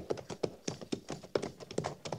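Radio-drama sound effect of two horses walking: an uneven, continuous clatter of hoof clops, several a second.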